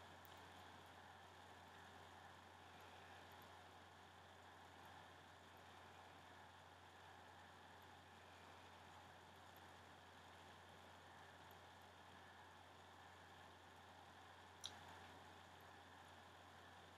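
Near silence: room tone with a steady low hum, and one faint click near the end.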